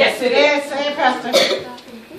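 Speech only: a man preaching, his words unclear, trailing off near the end.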